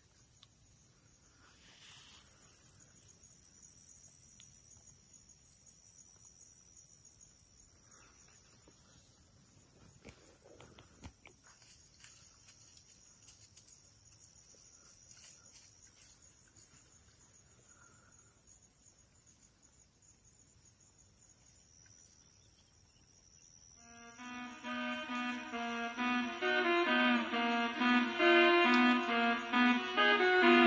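Faint woodland ambience with a steady high-pitched insect drone. Background music comes in about 24 seconds in and grows to be the loudest sound by the end.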